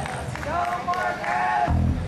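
Live band between songs: an electric guitar plays a few loose notes through the stage speakers, mixed with a voice, and a deep low note comes in near the end.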